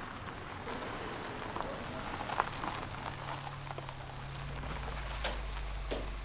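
A car pulling up slowly, its engine a low steady hum that comes in about halfway through, with a few faint clicks.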